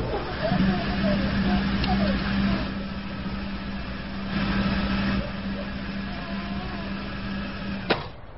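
A car running at a steady speed, with a steady hum under road or engine noise that stops suddenly just before the end.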